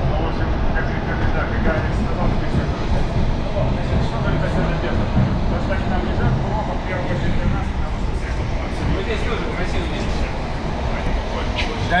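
Electric commuter train running at speed, heard from inside the carriage: a steady rumble of wheels on the track.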